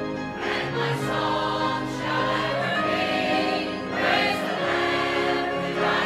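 Church choir and congregation singing a hymn together in long held notes that move to a new pitch every second or so.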